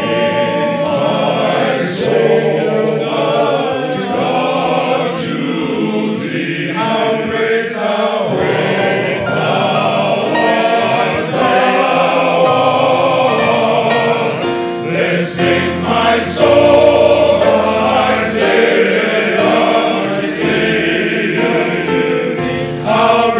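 A men's chorus singing a gospel song in harmony, loud and steady, with instrumental accompaniment including a low bass line and sharp percussive strikes.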